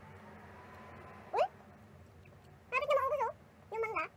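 Three short, high-pitched vocal calls: a quick upward-gliding one about a second and a half in, then two with a wavering pitch near the end.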